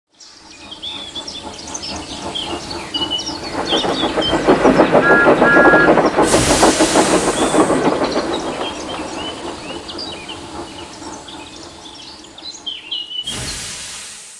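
A train passing while birds chirp: a rumble and rhythmic clatter of wheels swell to a peak and then slowly fade, with two short high toots and a burst of hiss near the peak.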